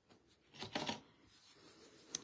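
Mostly quiet, with one brief soft rustle about half a second in as hands handle a metal nail-stamping plate.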